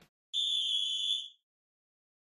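A single steady, high-pitched tone lasting about a second, starting a quarter second in: a transition sound effect between title graphics.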